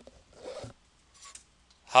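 Felt-tip highlighter scratching on paper as a small circle is drawn, in two short strokes: one about half a second in and a fainter one just past a second.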